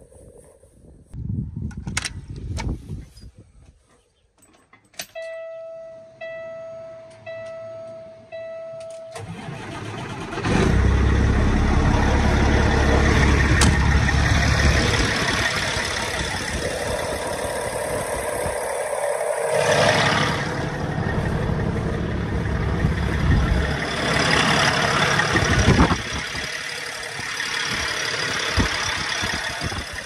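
A short run of about four evenly spaced electronic warning beeps from the truck. About ten seconds in, the Caterpillar C15 diesel starts and keeps running with a deep, steady idle, heard up close at the open engine bay.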